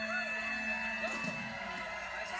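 A television talk-show broadcast heard through the TV's speaker. The band's walk-on music ends on a held note about two-thirds of a second in, and brief voice sounds follow before the talk resumes.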